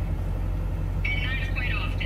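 A vehicle's low, steady rumble heard from inside the cab. Partway through, a thin, high voice comes over the top of it.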